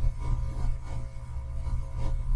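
A steady low hum with faint, thin steady tones above it: room and microphone background noise, with no other distinct sound.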